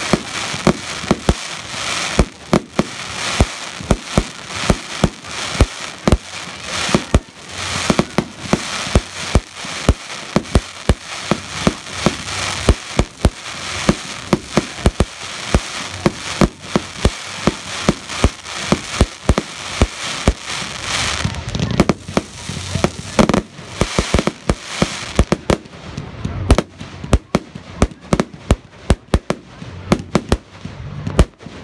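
Fireworks display: aerial shells and crackling-star effects going off in a rapid, continuous barrage, several sharp bangs a second with a dense crackle between them.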